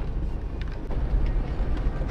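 Car heard from inside the cabin: a steady low rumble of engine and road noise.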